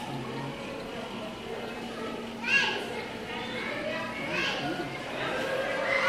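Indistinct children's voices and chatter in a busy public hall, with a loud, high-pitched child's squeal about two and a half seconds in and more excited voices near the end.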